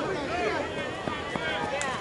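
People talking casually, several voices running on through the whole stretch, with a couple of faint clicks in the background.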